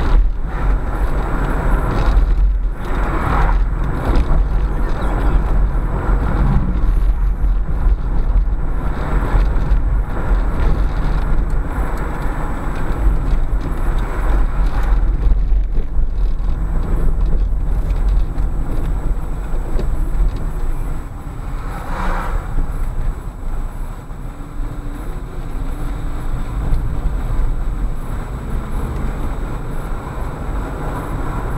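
Steady road and engine noise heard from inside a moving car, with a strong deep rumble. It eases somewhat in the second half as the car slows.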